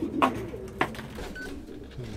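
Pigeons cooing in a loft, with a couple of short sharp knocks.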